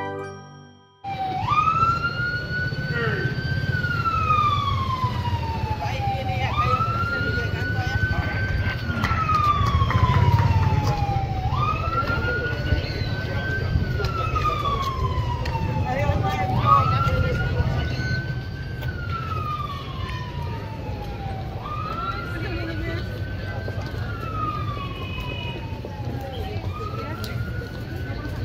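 A siren wailing in repeated cycles, each a quick rise in pitch followed by a slow fall, about every five seconds, starting about a second in.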